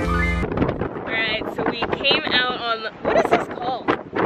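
Background music cuts off about half a second in. After that, wind buffets the microphone over a woman's laughing voice.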